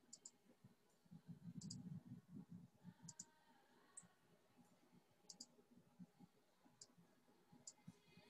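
Near silence with faint computer mouse clicks, scattered about once a second and several in quick pairs like double-clicks.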